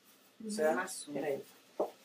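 A person's voice speaking briefly in a small room, about a second of talk with short pauses before and after.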